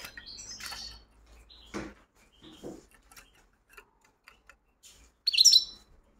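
European goldfinch (chardonneret) giving short, scattered chirps and twitters, with a much louder burst of song near the end.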